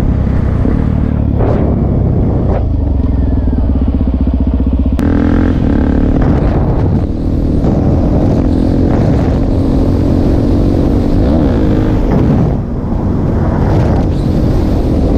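Suzuki DR-Z400 supermoto's single-cylinder four-stroke engine ridden hard, loud and close. The revs climb sharply about five seconds in, then rise and fall under the throttle, with a few brief dips.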